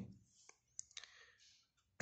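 Near silence with a few faint clicks about half a second to a second in: a felt-tip marker tapping onto paper as a figure is written.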